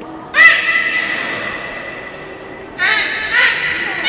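Beluga whale calling in air with its head raised out of the water: a call about a third of a second in that glides briefly upward, then holds and fades over a second or so, followed by two more calls close together near the end.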